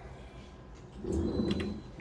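Slot machine sound as the machine switches to its free-spins screen: a low, pitched sound about a second in, lasting most of a second, with a short thin high tone and a few clicks in its middle.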